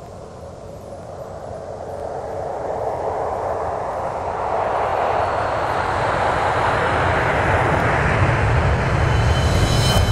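Intro sound effect: a swell of noise with a deep rumble underneath, growing steadily louder and rising in pitch like a jet-like whoosh building up. Near the end, pitched tones come in as music begins.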